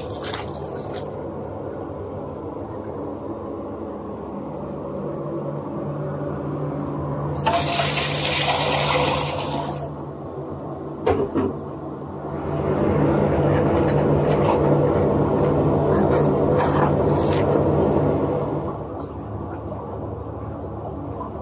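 Filtered water running into a plastic measuring pitcher at a stainless steel sink, then water poured in two longer spells: a bright hissing one about eight seconds in and a fuller, louder one from about twelve to eighteen seconds in. This is the rinsing of a herbal decoction machine. A steady low hum runs underneath.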